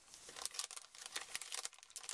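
Clear plastic cello sleeve crinkling as a stack of cards is pushed back into it: a dense, irregular run of small crackles.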